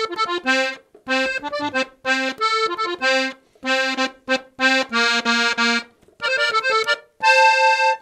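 Three-row diatonic button accordion tuned in F (F–B♭–E♭) playing a melody on the treble buttons alone, in two-note chords. The notes come in short phrases, about one a second, with brief gaps between them.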